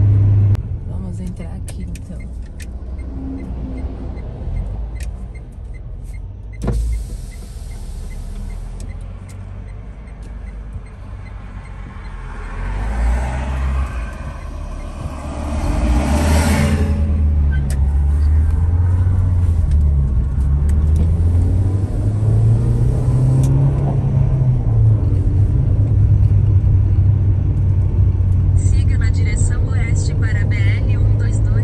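Car cabin on a highway: steady road and engine rumble as the car drives along, with one sharp click about seven seconds in. A large bus passing the other way swells up and peaks about sixteen seconds in. After it the rumble stays louder.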